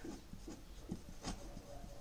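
A pen writing on paper: faint, irregular scratching strokes of handwriting.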